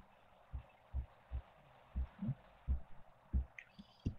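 A string of soft, low, muffled thumps at an uneven pace of about two a second, over a faint steady hiss.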